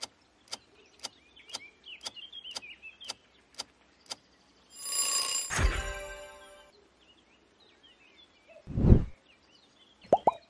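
Quiz game sound effects: a countdown timer ticking about twice a second, stopping about four seconds in; then a bright ringing chime with a burst of noise as the correct answer is revealed, fading over about two seconds; then a short, loud whoosh near the end as the screen changes.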